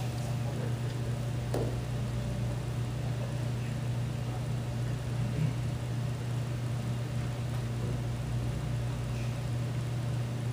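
Room tone in a hall: a steady low hum runs throughout, with faint, indistinct voices and a couple of small knocks.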